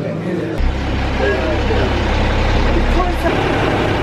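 Boat engine running steadily with a low-pitched drone that starts about half a second in, with voices in the background.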